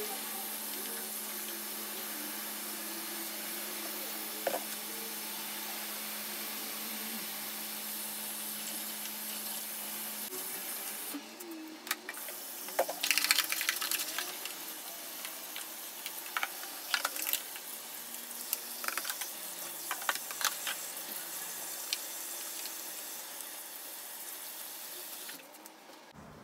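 Tap water running steadily into a bathroom sink while lash brushes are scrubbed and then a plastic tray is rinsed under the stream. In the second half there are scattered light knocks and clicks of the tray and tools being handled in the basin. The water shuts off shortly before the end.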